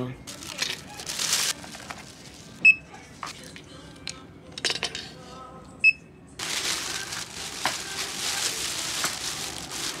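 Checkout counter sounds: a brief rustle of clothing on a hanger, then two short high electronic beeps about three seconds apart, like a checkout scanner or card terminal, then several seconds of steady rustling and crinkling as the purchase is handled.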